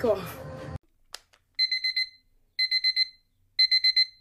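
Electronic alarm-clock beeping: three rounds of four quick, high-pitched beeps, about one round a second, starting about a second and a half in, preceded by a single click.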